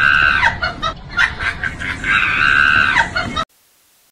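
A high-pitched scream held for about a second, heard twice about two seconds apart, each one dropping in pitch as it ends, over quick clicking beats. It cuts off abruptly about three and a half seconds in, leaving faint static hiss.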